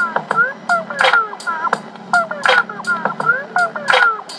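Background music with a steady beat of about two strokes a second and gliding, honk-like synth notes sweeping up and down over it.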